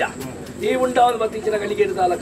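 A man's voice in drawn-out, sing-song ritual recitation in Tulu, with long held and bending tones. It dips briefly just after the start, then resumes about half a second in.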